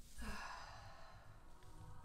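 A woman's faint, long sigh, a soft breath let out that slowly fades.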